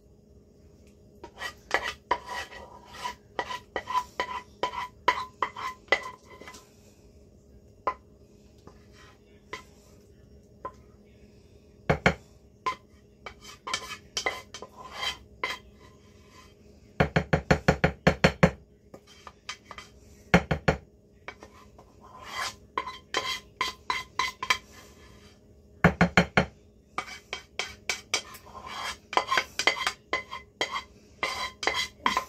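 Utensil scraping thick lemon filling out of a metal saucepan, with irregular scrapes and clinks against the pan. Two short runs of rapid taps come, one about seventeen seconds in and a shorter one near twenty-six seconds.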